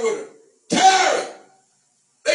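A man's voice through a handheld microphone giving two loud, wordless shouts. One dies away just after the start, and a second, about a second long, follows under a second in.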